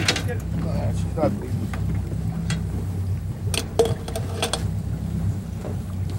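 A boat engine idles with a steady low hum while a muskie is held in the water alongside. A few small splashes and sharp knocks come about three and a half to four and a half seconds in.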